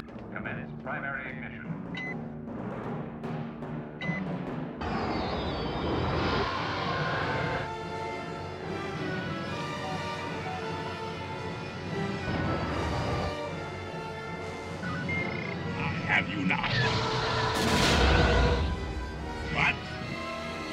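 Orchestral film score with heavy timpani. Short electronic beeps sound about two and four seconds in, and a loud burst of sci-fi battle effects comes near the end.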